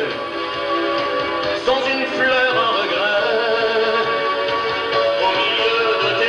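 A male singer singing a French song into a handheld microphone over musical accompaniment, heard through a camcorder's built-in microphone in the hall.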